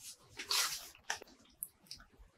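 Faint handling noise: a short rustle about half a second in, then a sharp click and two lighter ticks as a wooden-framed painting is picked up and held out.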